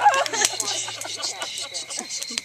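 Several women's voices laughing and chattering over one another, with a few sharp pops from a crackling campfire.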